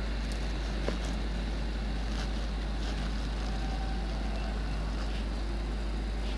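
Steady low rumble and hiss of outdoor background noise, with a faint click about a second in.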